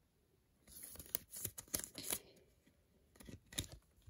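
A trading card being slid into a rigid clear plastic toploader: faint scraping and rustling of card and plastic rubbing together, then a couple of light clicks near the end.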